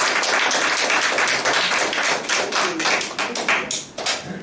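A congregation applauding. The dense clapping thins to a few separate claps near the end.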